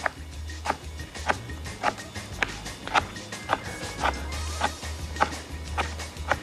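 Kitchen knife chopping blanched spinach on a plastic cutting board, a steady knock of the blade on the board about every half second.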